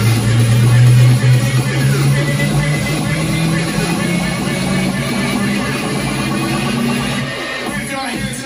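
Loud music played through a karaoke speaker combo of two Weeworld S1500 40 cm subwoofers and a pair of 25 cm main speakers, with a strong, sustained bass line the loudest part.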